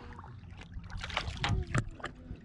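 Water splashing as a released smallmouth bass kicks free of the hand and swims off, a run of quick splashes about a second in, over a low steady rumble.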